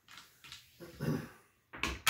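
Craps dice being pushed back across a felt table with a dealer's stick: a soft rub in the middle, then two sharp clicks near the end.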